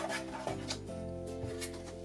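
Soft background music with sustained chords, under a few faint rustles of tape and paper being handled on a paper trimmer.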